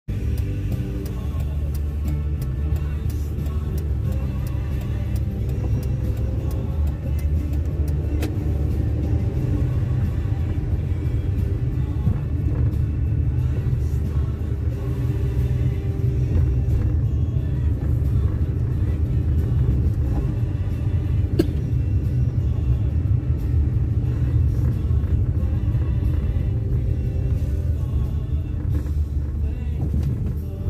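Steady low road rumble of a moving car heard from inside the cabin, with music playing over it.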